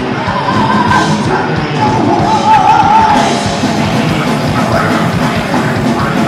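Heavy metal band playing live, with electric guitars and drums under harsh yelled vocals.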